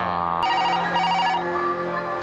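An electronic desk telephone ringing: a warbling trill in two short bursts, starting about half a second in, over background music.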